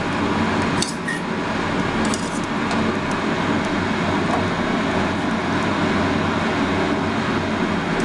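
Steady rushing noise with a low hum, with a few light metallic clicks of a spoon spreading butter on the sandwich, about one and two seconds in.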